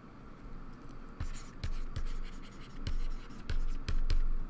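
Handwriting with a stylus on a tablet: a run of quick, scratchy pen strokes with light taps, starting a little over a second in.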